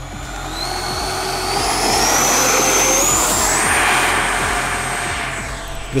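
Twin 64 mm electric ducted fans of a Freewing F-14 Tomcat model jet at full throttle for takeoff: a high whine that climbs in pitch over the first three seconds or so and then holds, with the rush of air growing loudest about halfway through and easing off as the jet climbs away. Early in the run there is a rapid clatter from the hard plastic wheels rolling over rough concrete.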